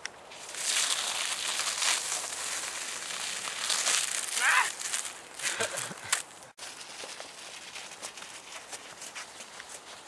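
Crunching and hissing over icy, slushy ground, loud for the first six seconds or so and then quieter crackling. A short pitched squeak or cry comes about four and a half seconds in.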